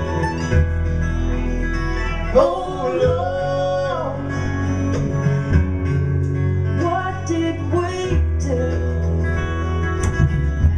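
Live acoustic country-bluegrass band: two acoustic guitars and an upright bass play steadily. A woman's lead voice comes in about two seconds in and again near eight seconds, its pitch sliding up and down.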